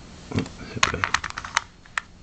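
A quick run of about a dozen light, sharp clicks and taps lasting under a second, then a single click near the end. It sounds like test gear being handled as a multimeter is set up to read the LED voltage.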